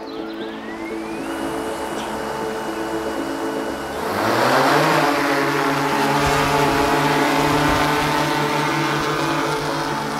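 DJI Inspire 2 quadcopter's motors spinning up, with a whine that rises and then holds steady. About four seconds in, the rotors get louder and rise in pitch as the drone lifts off, then settle into a steady hover hum.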